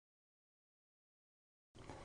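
Near silence: dead digital silence, with faint room tone coming in near the end.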